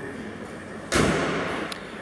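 A single sudden thump about a second in, fading with a short echo in a large hall, followed by a faint click.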